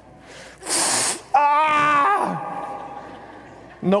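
A man's voice through a microphone: a sharp hissing breath, then a drawn-out groan that falls in pitch over about a second, a wordless wince of mock reluctance.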